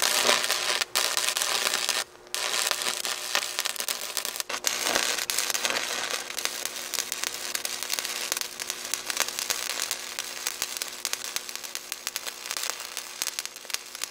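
Stick welding arc on steel: the electrode crackling and sputtering steadily as the rod burns along a bead, with a faint steady hum underneath. The arc breaks off briefly twice in the first few seconds.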